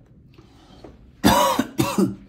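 A man coughs twice in quick succession, two short loud bursts a little over a second in, after a faint intake of breath.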